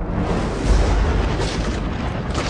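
A sudden loud blast and boom, a trailer sound effect, with its deepest low boom about two-thirds of a second in, over trailer music.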